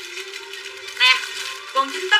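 A brief spoken phrase over steady background music with a held tone.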